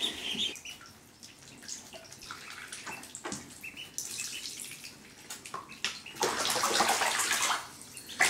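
Shallow bathwater sloshing and splashing as Cayuga, Swedish and Indian Runner ducklings paddle about in a bathtub, with a few short, faint peeps. A louder stretch of splashing starts about six seconds in and lasts over a second.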